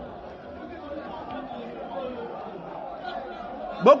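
Indistinct distant voices of several people chattering at a low level, with no single clear speaker, until a man's loud shout cuts in near the end.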